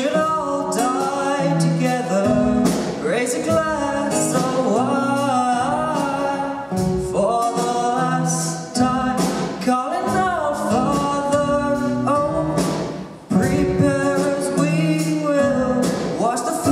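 Teenage boys' vocal group singing with acoustic guitar accompaniment, a lead voice over sustained harmonies. The sound dips briefly about three-quarters of the way through, then comes back in full.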